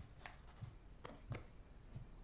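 Pencil writing on paper, heard faintly as a few short scratching strokes in a quiet room.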